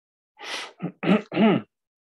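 A man clearing his throat: a short rasping breath, then three quick throaty sounds with pitch, the last two loudest, all within about a second.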